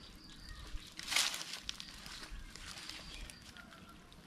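Brief hiss about a second in as oyster-sauce marinade, basted onto a squid head roasting on a bamboo spit, drips onto the hot charcoal. Faint bird chirps and outdoor background sound run through it.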